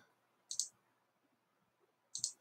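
A single computer mouse click about half a second in, over faint room tone.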